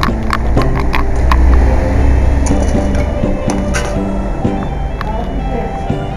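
Saxophone recording of a slow melody in held notes over a backing track with a low bass, laid over the sound of a busy noodle shop. Short clinks of bowls and utensils and voices come through underneath.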